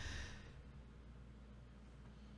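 A man's breath close to the microphone, fading away within the first half-second, then near silence with a faint low hum.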